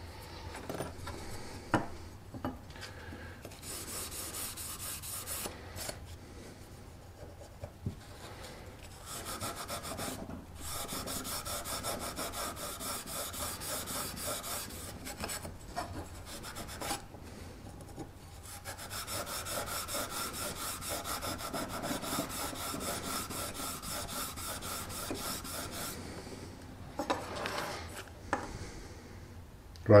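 A green abrasive pad scrubbing back and forth over a steel knife blade across freshly etched lettering, in several bouts of quick strokes with short pauses between them.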